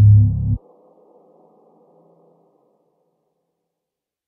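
Deep, throbbing drone in the soundtrack, swelling about one and a half times a second and cut off abruptly half a second in, leaving a faint fading tail and then silence.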